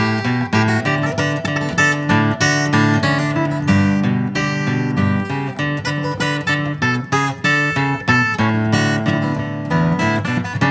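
Music led by strummed acoustic guitar, with a steady rhythm.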